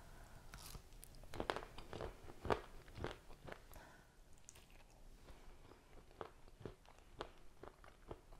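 Biting into and chewing a frozen vanilla ice cream bar loaded with crushed chocolate-and-peanut candy bar: a string of crisp crunches that thins out in the second half.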